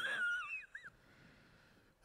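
A high-pitched, wavering squeal from a person's voice that fades out within the first second, followed by near silence.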